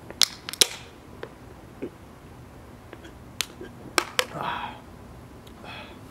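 Aluminium beer can being shotgunned: the pull tab is cracked open with two loud sharp snaps about half a second apart, and the beer drains out through the hole punched in the can's side. A few more sharp clicks of the can follow partway through, with a short breath after them.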